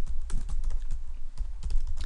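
Computer keyboard typing: a run of uneven keystroke clicks as code is typed, over a steady low hum.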